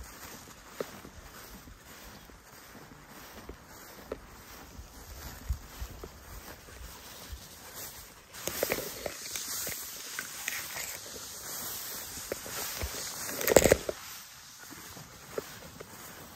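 Footsteps through tall, dense grass, the stalks brushing and rustling. The brushing grows louder about halfway in as the stalks rub against the camera, with a sharp thump about three-quarters of the way through.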